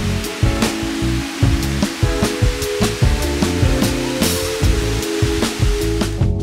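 Background music with a steady beat laid over the steady rushing hiss of the Cola de Caballo (Horsetail Falls) waterfall; the water noise cuts off at the very end.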